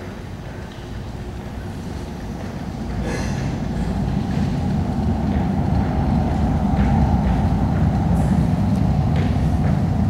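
Rumble of a BART train approaching through the subway tunnel, growing steadily louder, with a brief sharp rattle about three seconds in and scattered clicks later.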